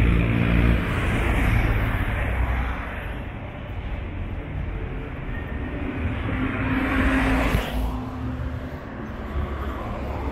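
Road traffic passing close by. A minibus goes past at the start with a loud engine rumble that fades over the first three seconds. A second vehicle, a van, passes about seven seconds in, its noise swelling and then cutting off quickly.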